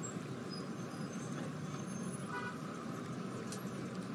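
Street traffic ambience: a steady wash of traffic noise, with a brief faint car horn toot a little over two seconds in.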